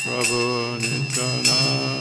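Devotional chant sung over karatals, small brass hand cymbals, struck in a steady rhythm of about three strokes a second, each stroke leaving a high ringing. A low steady drone runs underneath.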